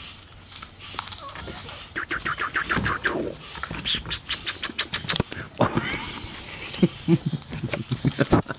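Chinese Crested Powder Puff puppies play-wrestling on a wooden deck: rapid runs of clicking and scuffling, densest in the first half, with a few short puppy vocal sounds in the second half.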